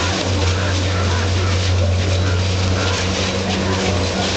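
A steady low hum runs throughout, under a wash of outdoor background noise and faint voices.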